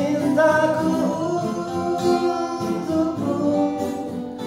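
A man singing held notes over two acoustic guitars in an acoustic performance of a song.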